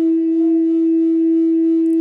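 Native American flute sounding one long, steady note with no change in pitch.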